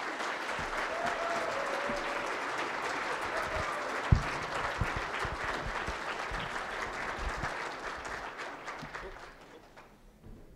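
Audience applauding, a dense steady clapping that fades out near the end. A single thump sounds about four seconds in.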